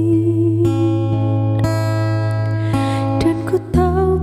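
Nylon-string classical guitar strummed in a slow accompaniment, with a woman's voice holding a sung note at the start and singing again as a new chord comes in near the end.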